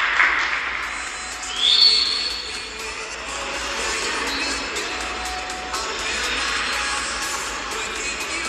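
Audience applause in an ice rink, with music playing over it. A brief high tone rises and holds for a moment about two seconds in.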